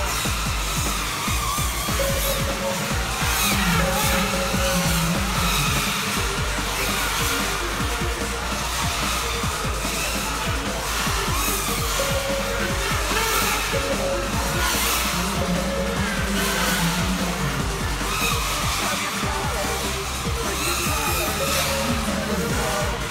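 Background music with a steady beat, with a wavering high motor whine beneath it like racing quadcopters' electric motors changing pitch with throttle.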